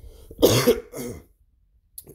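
A man coughing: a loud cough about half a second in, then a smaller one about a second in.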